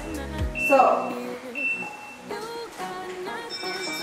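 Background music with a steady low beat that stops about half a second in, leaving sustained high notes and a short melody.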